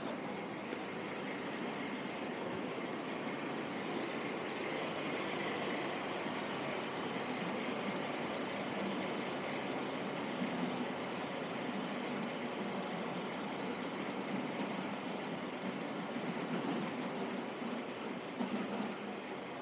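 Steady city street background noise: a continuous wash of traffic and urban hum with no distinct events.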